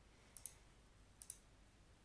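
Two faint computer mouse clicks about a second apart, each a quick pair of ticks, against near silence.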